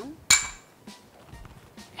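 A glass mixing bowl knocking once with a sharp clink and a brief ring, about a third of a second in, followed by a few faint knocks.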